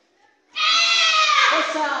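A child karateka's kiai: one long, high-pitched shout that starts about half a second in and falls in pitch near the end.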